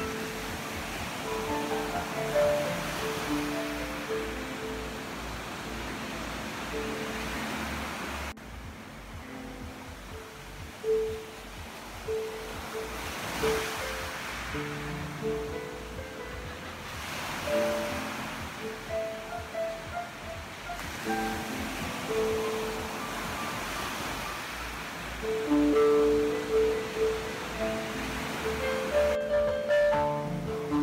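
Slow, sparse solo piano improvisation over the sound of ocean surf, the waves rising and falling every few seconds beneath the notes. The surf sound drops abruptly about eight seconds in, then builds again.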